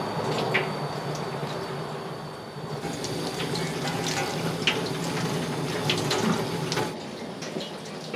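Kitchen tap running steadily into a sink over a low steady hum, with a few short sharp clicks of a knife against a plastic cutting board as fish is cut.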